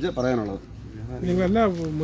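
A man speaking Malayalam, with a short pause about half a second in.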